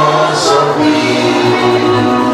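Gospel worship music: several voices singing together over long held notes and a steady bass.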